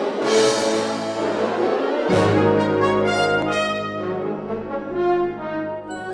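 Military band with a full brass section playing the opening bars of a melody: sustained brass chords with two loud accented attacks about two seconds apart, a deep bass note coming in with the second.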